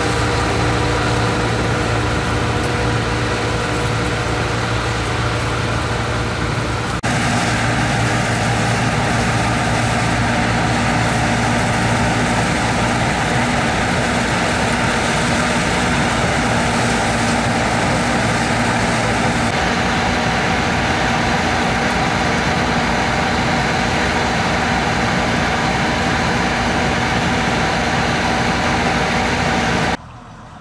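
Bizon combine harvester's diesel engine and machinery running steadily while harvesting peas. The sound changes abruptly about seven seconds in and again about twenty seconds in.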